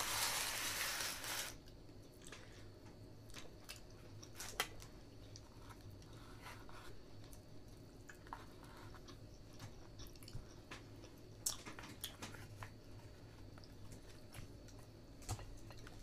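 Close, quiet chewing and eating sounds, with scattered light clicks of chopsticks and a fork picking at food in plastic bento trays. A louder hissing stretch lasts about the first second and a half.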